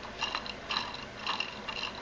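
Water-powered LEGO sewing-machine mechanism running, its plastic pegs and needle arm clicking and rattling irregularly, a few clicks a second.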